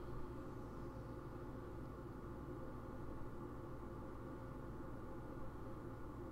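Faint, steady low hum of room tone with no distinct sounds; the paint pen on the paper is not heard.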